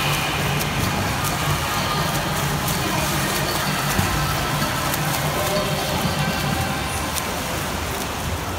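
Swimmer's freestyle strokes and kicks splashing in an indoor pool, a steady wash of water noise with a low hum underneath.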